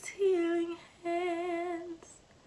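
A woman singing unaccompanied and without words: two held notes, a short one and then a longer one with vibrato.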